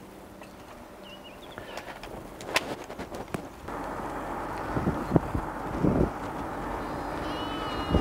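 A flock of sheep bleating in a pasture. Steady rushing wind and road noise sets in about halfway through.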